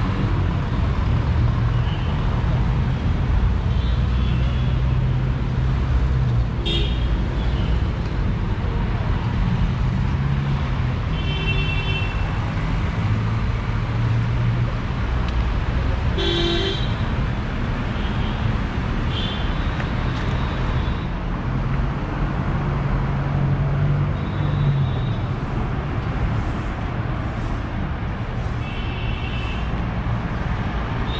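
City street traffic: a steady rumble of engines and tyres, with car horns honking in short toots several times, roughly every few seconds.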